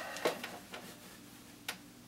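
Faint handling noises from a seated player settling an acoustic guitar: a few small clicks and rustles that die away, then one sharp tick near the end.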